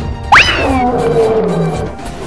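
A lion roar sound effect over background music. It starts suddenly about a third of a second in with a quick upward sweep, then falls in pitch and trails off over more than a second.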